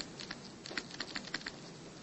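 Faint, irregular tapping and ticking of a stylus tip on a tablet surface while handwriting a word, a quick scatter of small clicks.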